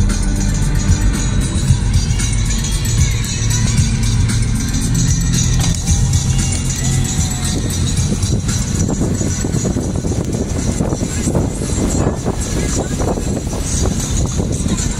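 Music playing over the steady noise of a van driving through floodwater on the road; from about eight seconds in a rougher rushing noise from the wheels and water takes over.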